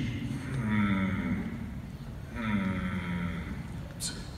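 A performer's voice making two long, slowly falling 'hmmm' sounds, a drawn-out musing while sizing up a disguise.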